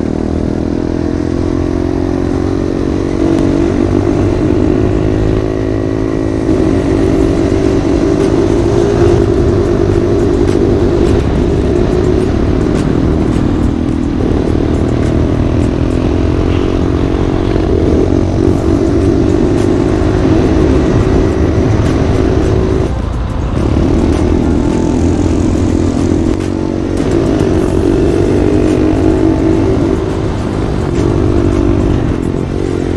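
Small engine of a vehicle being ridden along a paved path, running steadily with its pitch rising and falling as the throttle changes and easing off briefly twice, over a low rumble of wind and road noise.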